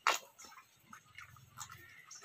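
A calf drinking rice water from a steel bowl: one loud slurp right at the start, then quieter sips and small wet clicks.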